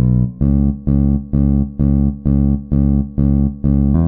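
Electric bass playing one low C-sharp over and over in a shuffle rhythm, about two notes a second. Each note is cut short, leaving a gap before the next.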